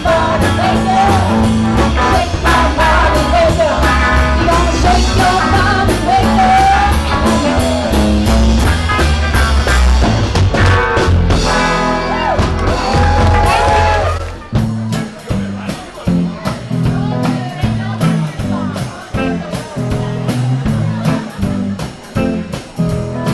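Live blues-rock band playing: drums, upright bass and guitar, with a lead line that bends up and down in pitch over a loud, full groove. About fourteen seconds in the full band drops out suddenly to a sparser, quieter pattern of bass notes and drum hits.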